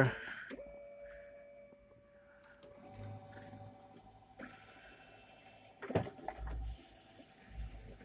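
Canon i-SENSYS MF3010 laser multifunction printer running a copy job: a faint steady motor whine that steps up to a higher pitch about four seconds in, with a click and a low rumble near six seconds.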